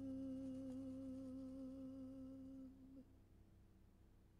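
A man's voice holding a soft, low final note with vibrato, stopping about three seconds in.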